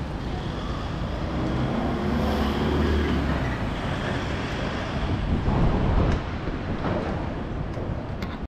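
City street traffic: a steady rumble of passing vehicles, with a heavier vehicle passing about two to three seconds in and another swell around six seconds.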